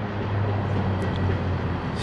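A vehicle engine running steadily, a low even hum over outdoor background noise.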